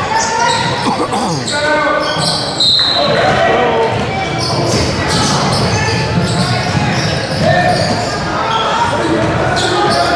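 The echoing sound of a youth basketball game in a large gym: voices of spectators and players calling out over one another, with a basketball dribbling on the hardwood court.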